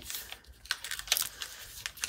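Folded tracing paper rustling and crinkling under hands pressing and smoothing it flat, in a few short, sharp strokes.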